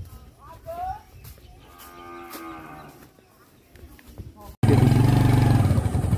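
A cow moos once, a long call about two seconds in. About four and a half seconds in, the sound cuts suddenly to a loud, steady motorcycle engine running while riding.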